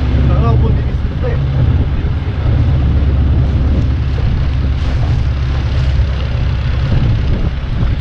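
Longtail boat engine running steadily as the boat moves along the river, with water rushing past and wind on the microphone.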